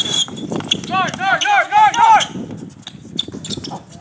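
Basketball sneakers squeaking on a hard outdoor court: a quick run of short, high squeaks, loudest from about one second in for about a second, over the scuffing and knocking of players moving.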